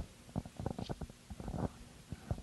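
Faint, irregular soft knocks and rustles from a handheld microphone being moved and lowered.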